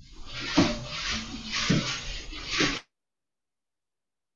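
Background noise from participants' open microphones on a video call: a steady rushing hiss with a few short voice-like sounds in it. It cuts off suddenly about three seconds in as the microphones are muted.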